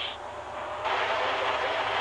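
Steady race-track noise of distant stock cars running, starting suddenly about a second in after a quieter moment.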